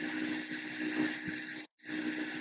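Steady hiss with a faint low hum from an open microphone line, dropping out for a moment near the end.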